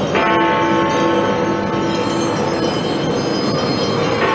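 Big Ben, the Great Bell in the Palace of Westminster clock tower, struck once by its hammer just after the start. It rings on with many overtones, dying away slowly, and the next stroke falls right at the end, about four seconds later.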